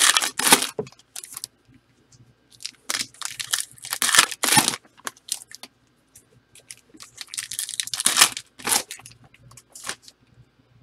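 Trading cards and their packaging handled by hand: crinkling, tearing and sliding in three bursts of a second or two each, with quieter gaps between.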